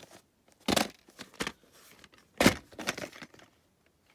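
A VHS tape in its cardboard sleeve being handled and turned over: rustling and scuffing, with two louder scrapes, one just under a second in and one about two and a half seconds in.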